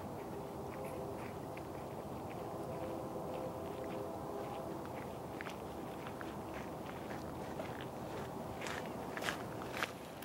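Steady outdoor background noise with a faint low hum, and scattered light clicks and taps that come more often near the end.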